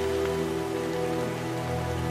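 Soft background music of long held chords over a steady hiss.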